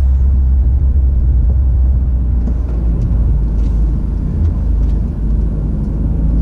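Steady low rumble of engine and road noise heard from inside a moving vehicle's cabin, with a few faint ticks in the middle.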